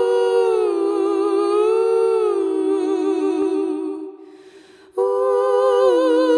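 Wordless voices sing sustained notes in harmony, a cappella, with vibrato. The chord fades away about four seconds in and comes back in a second later.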